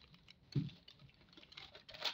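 Faint crinkling and rustling of paper pattern pieces as they are handled and folded on a table, with one soft low thud about half a second in.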